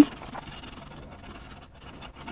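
Felt-tip marker rubbing back and forth on paper as a shape is coloured in: steady scratching strokes with a brief pause near the end.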